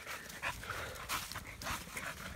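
A pocket bully dog panting, with footsteps rustling through dry leaf litter.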